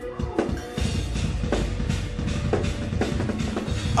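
Metal drumming on a full drum kit: a rapid, even run of double-bass-drum strokes with snare and cymbals, over a backing track.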